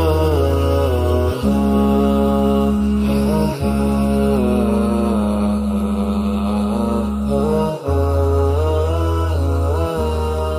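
Closing-theme vocal music: a sung melodic line gliding between notes over steady held low tones, which change pitch a few times.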